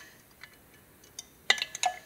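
Two light clinks of a spoon against a glass beaker about a second and a half in, from stirring salicylic acid powder into warm castor and sunflower oil.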